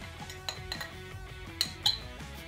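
A metal knife clinking against a small glass bowl while scooping out butter, a light clink about half a second in and two louder ones near the end, over background music.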